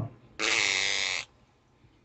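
A man's audible breath close to a phone microphone, one short hissing breath lasting under a second, about half a second in.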